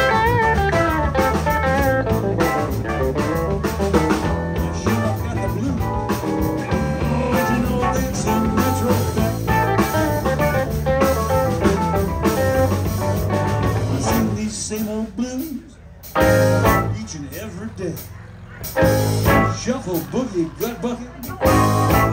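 Live electric blues band playing an instrumental passage between verses: electric guitar over bass, keyboard and drums. About two-thirds of the way through, the band drops into short, separated hits with quiet gaps between them.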